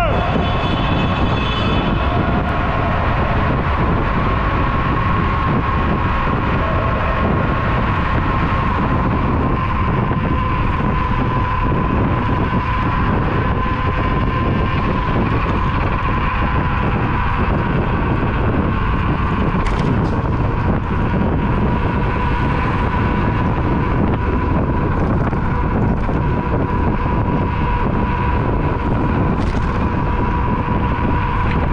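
Riding an electric scooter at speed: wind rushing over the camera's microphone and road noise, with a steady high whine running underneath.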